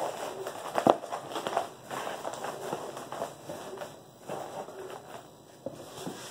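Plastic bubble wrap crinkling and crackling as it is crumpled and pushed down into a cardboard shipping box, in irregular rustles with a sharp click about a second in.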